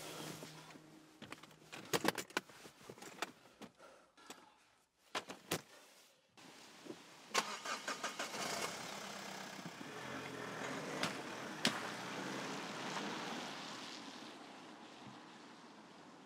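A few sharp clicks and knocks inside a car, then a car engine starting about six seconds in and running steadily, slowly fading near the end.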